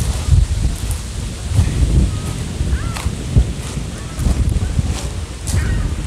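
Wind buffeting the microphone in irregular gusts, with a few sharp knocks from handling.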